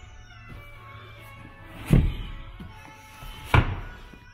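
Two thumps about a second and a half apart as a boat's hinged flip-up seat is closed down over its storage compartment, over background music.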